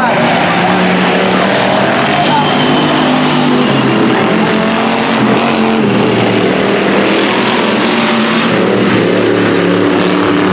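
Engines of several dirt-track cruiser-class race cars running at race speed together, their pitches overlapping and shifting.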